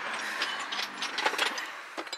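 Scattered light clicks and taps of ceramic salt and pepper shakers being handled and knocking against one another in cardboard boxes.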